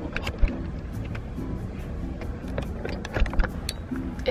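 Steady low rumble of a car interior, with a few handling knocks and clicks, the loudest about half a second in and just after three seconds, under background music.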